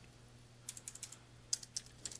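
Computer keyboard typing: faint key clicks in two short runs, the first starting a little under a second in and the second around a second and a half in.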